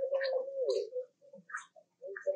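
Baby macaque crying: one long whining call that dips in pitch and trails off about a second in, with soft clicks around it.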